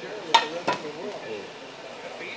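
Two sharp knocks about a third of a second apart, a small juice-box carton handled against a wooden tabletop; the first knock is the louder.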